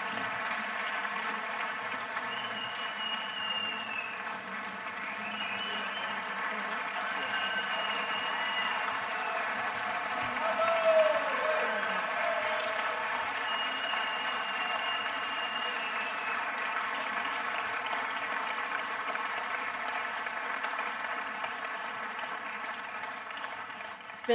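A large audience applauding at length after a speech, with a voice calling out loudly above the clapping about eleven seconds in.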